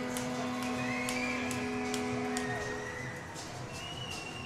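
Arena goal horn sounding one long, steady, low note that fades out about two and a half seconds in, signalling a goal.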